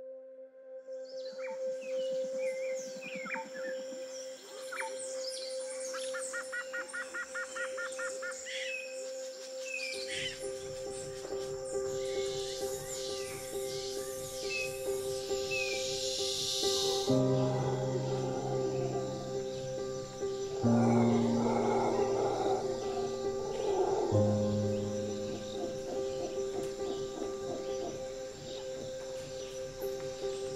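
Birds chirping and calling, including a fast trill, over a sustained held note. A little past halfway, a slow sad piano and violin instrumental takes over, with piano chords every three to four seconds.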